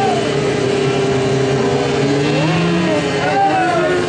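Superbike engine held at high revs while its rear tyre spins in a burnout, the pitch climbing slightly just past the middle.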